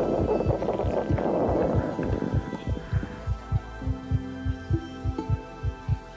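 Heartbeat sound: steady low thumps, about two to three a second. Rustling noise runs over the first two seconds, and a low steady tone comes in about four seconds in.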